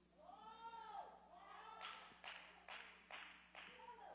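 A very faint, wavering vocal sound close to a microphone, like a quiet hum or moan, in the first second. After it come about five short, soft breaths.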